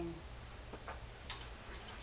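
Quiet room tone: a steady low electrical hum with a few faint, light clicks around the middle.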